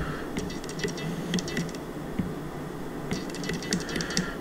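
Handling noise: a soft thump, then two runs of light, quick clicks and scratches from a hand shifting a glass beer bottle close to the microphone.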